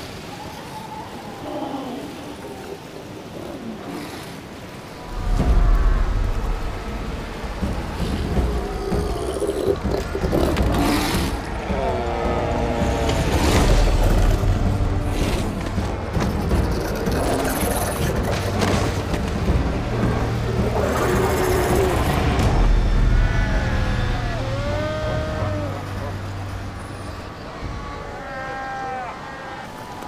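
Cape fur seal bulls fighting, with many growling, barking calls that rise and fall in pitch, most from about ten seconds on. Under them runs background music with a low drone, starting about five seconds in.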